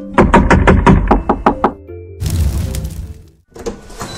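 Rapid knocking on a door, about nine quick knocks in a second and a half, followed by a rushing noise and a single click.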